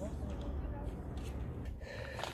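Faint voices of people nearby over a steady low rumble.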